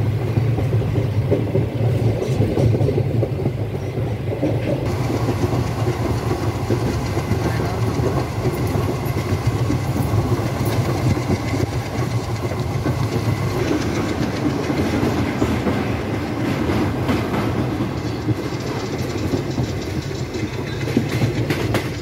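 Passenger train running along the track, heard from inside the coach at an open barred window: a loud, steady rumble of wheels on rail with continuous clatter, which grows brighter and busier about five seconds in.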